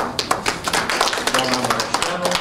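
Hand applause from a small group of people, starting suddenly and continuing as a dense, uneven patter of claps. A brief voice is heard underneath around the middle.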